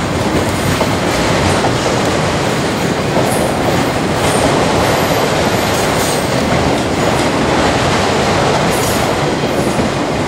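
A freight train of autorack cars passing close by: a loud, steady rumble and rattle of steel wheels on the rails, with a few brief high-pitched squeaks from the wheels.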